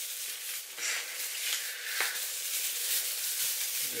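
Rustling of a small artificial Christmas tree's plastic branches as hands work through them, with a light click about two seconds in.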